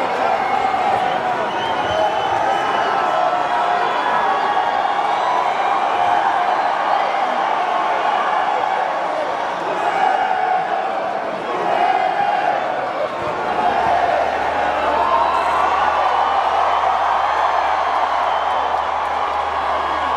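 Large arena crowd cheering and chattering, a dense, steady wash of many voices with no single voice standing out.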